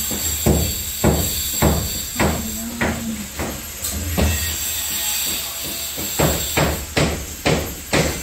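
Repeated hammer blows on the masonry wall at the top of the stairwell, about two strikes a second, coming a little faster near the end.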